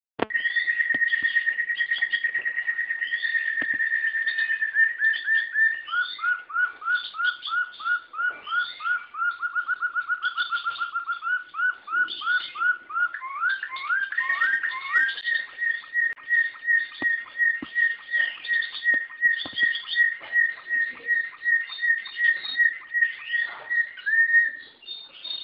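A domestic canary singing one long, continuous song. It starts with a fast, high trill, drops to a lower rolling trill about six seconds in, slides upward a few times around the middle, then finishes with a steady string of repeated whistled notes, about three a second.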